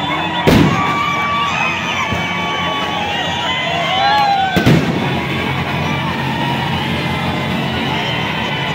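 A street crowd cheering and whooping over music, with two sharp firecracker bangs, one about half a second in and one a little past the middle.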